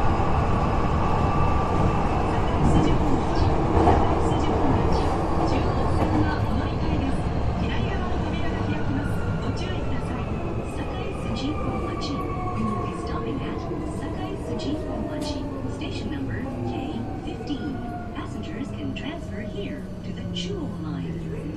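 Electric subway train (car 8303) running in a tunnel, heard from on board, slowing down. Its motor whine falls steadily in pitch over the low running rumble, with scattered clicks from the wheels, as the train brakes toward a station stop.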